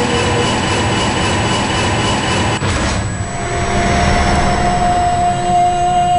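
Film soundtrack sound design: a loud, dense rumbling drone under held steady tones. About three seconds in, a new steady higher tone comes in.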